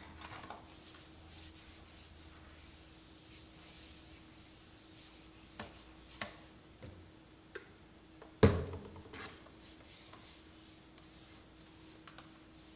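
A cloth being wiped across a small wooden side table's top to spread furniture polish, a soft rubbing. A few light knocks and one sharper knock a little past the middle come as things on the tabletop are lifted and set down.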